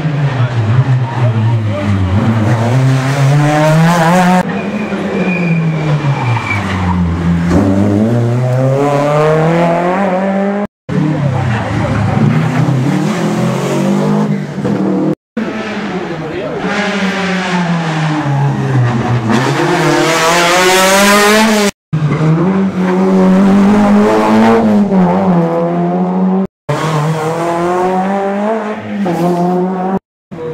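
Rally cars, among them a Renault Mégane F2000, a Peugeot 206 Kit-Car and a Peugeot 306 S16, taking a junction one after another: each engine drops in pitch as the car brakes and downshifts, then revs hard and climbs up through the gears as it accelerates away. The passes are cut together, each ending abruptly.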